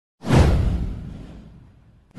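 Intro whoosh sound effect: one sweep with a deep boom, starting sharply just after the start, falling in pitch and fading away over about a second and a half.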